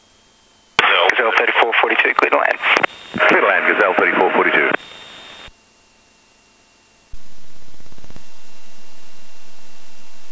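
Aviation radio chatter heard through the aircraft's intercom: about four seconds of thin, narrow-band radio voice in two stretches. Then, about seven seconds in, a steady loud sound starts abruptly and holds.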